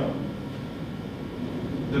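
Steady low room rumble, an even hum with no distinct events.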